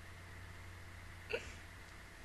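Faint steady electrical hum of the microphone setup, with one short vocal sound from a woman, a single quick burst, about a second and a half in.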